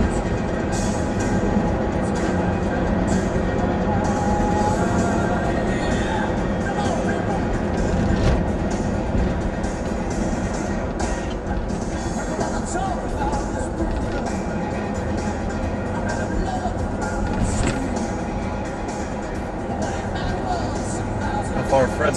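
Music playing on the car stereo inside a moving car's cabin, with singing, over a steady low rumble of engine and road noise.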